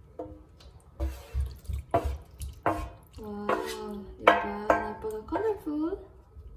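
Wet cubes of set gelatin sliding and knocking as they are scraped out of a stainless steel pan into a plastic tub, with soft clicks in the first half. Over the second half a voice sings a few held notes with no words.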